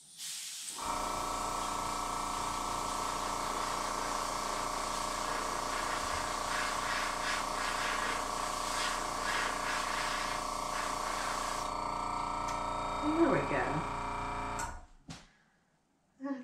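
Airbrush blowing a steady hiss of air while its small compressor runs with an even hum; both stop about a second before the end. A short rising and falling vocal sound comes through just before they stop.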